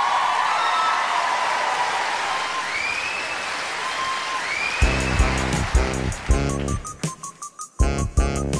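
Audience cheering and applauding with whistles. About five seconds in, a rap backing track with a heavy beat kicks in, dropping out for a moment near the end before coming back.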